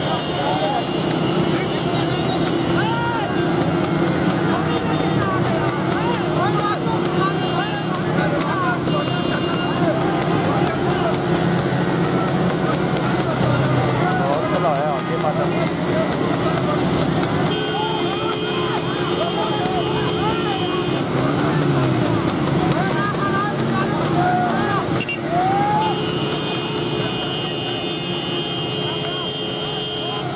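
Many motorcycle engines running together alongside a horse-drawn tonga race, with men shouting and calling over them. A steady high tone sounds for a few seconds twice in the second half.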